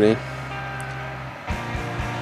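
Background music with steady held notes, changing about one and a half seconds in to a pattern with short low pulses.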